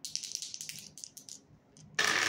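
A pair of plastic dice rattling in a cupped hand as they are shaken, a run of quick clicks. Right at the end they are thrown onto the table top.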